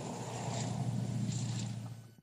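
Steady low hum of an idling engine under faint outdoor background noise.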